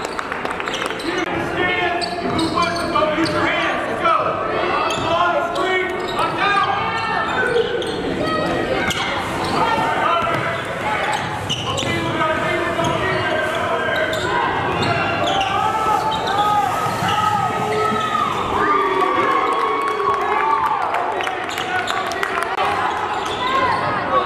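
Basketball bouncing on a hardwood gym court during play, with indistinct voices of players and spectators in the gym.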